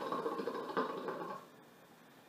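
Water bubbling in the base of a KM Single Heart hookah as smoke is drawn through the hose. The gurgle is steady and stops about one and a half seconds in, when the draw ends.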